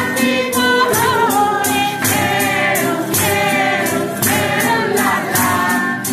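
Live folk song: men and a woman singing together over two strummed acoustic guitars, with a tambourine keeping time about twice a second.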